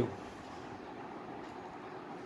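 Steady background hiss, room tone with no distinct event.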